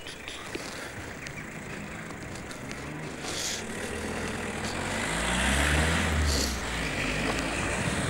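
A motor vehicle's engine passing on the road, growing louder through the middle, loudest about two-thirds of the way through, then easing off.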